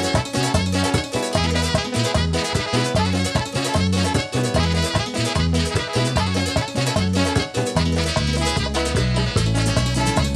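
Live bachata band playing, with strummed acoustic guitar, keyboard and a steady pulsing bass line; the bass turns fuller and more sustained near the end.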